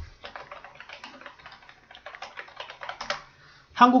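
Computer keyboard typing: a quick run of key clicks lasting about three seconds, then a short lull.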